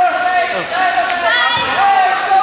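Several high-pitched voices calling and shouting with echo in an indoor swimming pool hall.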